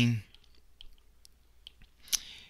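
Light, scattered clicks of a stylus tip tapping on a tablet's glass screen while handwriting a word, a few small taps spread over about a second and a half.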